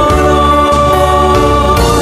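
Gospel song: one sung note held for over a second, over backing instruments and bass.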